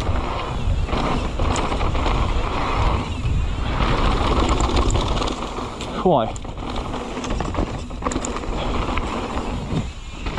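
Mountain bike descending a forest trail, with tyres rolling over dirt and a wooden ramp, rattles and knocks from bumps, and wind on the helmet- or bar-mounted camera's microphone. About six seconds in there is a short falling vocal exclamation from the rider.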